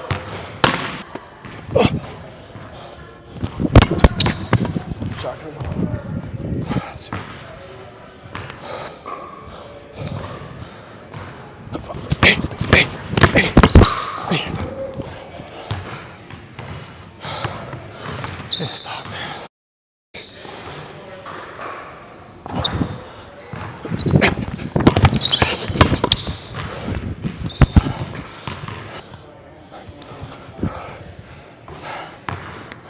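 Basketball dribbled and bouncing on a hardwood gym floor during one-on-one play, in irregular sharp bounces. The sound drops out completely for about half a second two-thirds of the way through.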